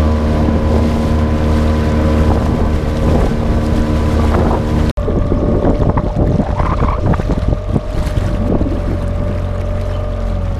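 Boat motor running steadily, with wind buffeting the microphone and water splashing against the hull. The sound drops out for an instant about halfway through, then the motor hum carries on with more splashing.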